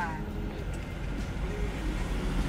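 Steady low rumble of engine and tyre noise heard inside a Ford Mustang's cabin while it drives along.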